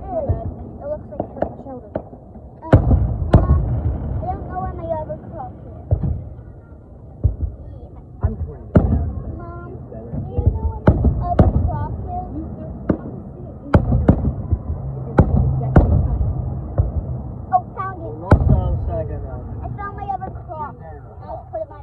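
Aerial fireworks shells bursting overhead: an irregular series of sharp bangs, roughly one every second, the bigger ones followed by a low rolling rumble.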